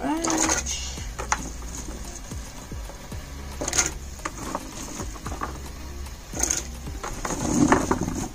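Handfuls of sliced peppers dropped into a pot of vinegar brine, splashing a few times at irregular intervals.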